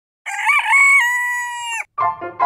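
A rooster crowing once: a few short wavering notes, then a long held note that drops off at the end.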